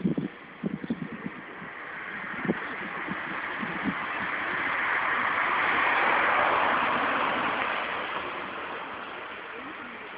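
A car passing along the street: its tyre and engine noise rises, peaks around the middle and fades away.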